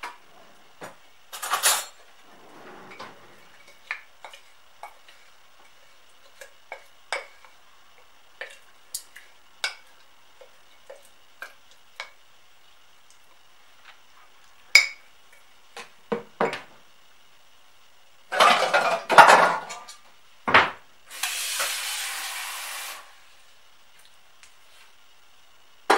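Kitchen clatter from dishes and cutlery being handled: scattered light clinks and knocks, a denser clattering burst about three-quarters of the way in, then a steady hiss for about two seconds near the end.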